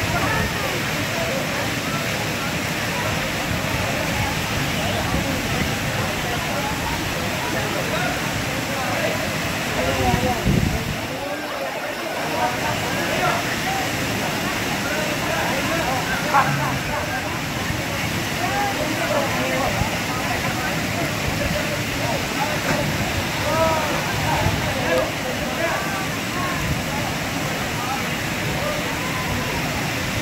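Steady rush of falling water from a waterfall into a swimming pool, under the overlapping chatter of a crowd of people.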